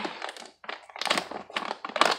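Plastic snack pouch being torn open and handled, with irregular crinkling crackles.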